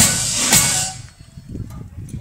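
Brass and drum marching band playing the final notes of a piece: two drum-and-cymbal strokes, then the music stops just under a second in, leaving crowd voices.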